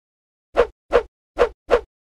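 Four short pop sound effects, about a third to half a second apart, with silence between them.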